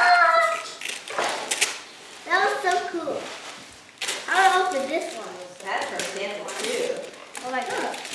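Young children making short high-pitched wordless calls and squeals several times, with wrapping paper rustling and tearing between them as presents are unwrapped.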